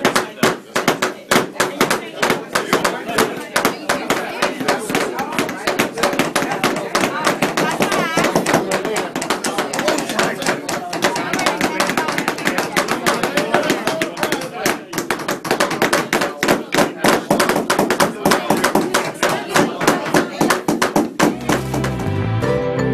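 Several claw hammers tapping nails into small wooden kit pieces, a quick, irregular run of sharp knocks, over many people talking at once.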